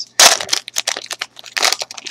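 Trading card pack wrapper being torn open by hand: a loud rip just after the start, then crinkling and crackling of the wrapper, with another burst of crinkling near the end.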